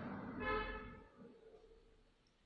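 A single short toot, steady in pitch, like a vehicle horn, about half a second in, over a rushing background noise that fades away soon after.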